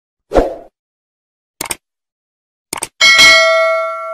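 Subscribe-button animation sound effects: a low thump, two quick double clicks like a mouse button about a second apart, then a bright bell ding that rings out and fades.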